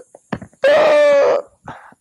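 A man's wordless vocal sound: one held note at a steady pitch lasting under a second, with a short click before it and a few faint short sounds near the end.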